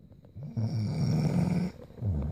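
A sleeping woman snoring: one snore of a little over a second, starting about half a second in.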